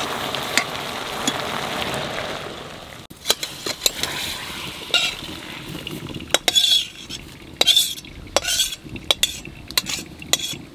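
Cut elephant foot yam stalks sizzling in a steaming wok while a metal spatula stirs them. About three seconds in the sizzling stops, and the spatula scrapes and knocks against the metal wok in a string of sharp clicks as the stalks are tipped out into a bamboo basket.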